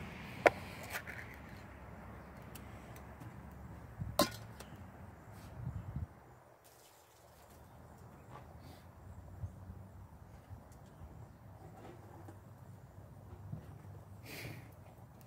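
Propane camp-stove burner running on high under a cast iron dutch oven: a steady low rumble that drops away for about a second six seconds in. Two sharp metallic clinks, one just after the start and one about four seconds in.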